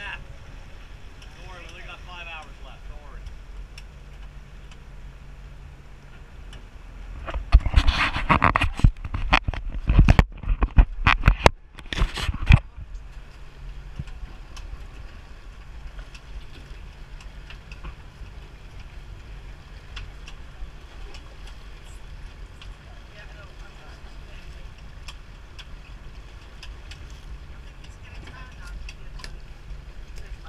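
A boat's engine runs with a steady low drone. A burst of loud knocks and thumps comes about seven seconds in and lasts some five seconds.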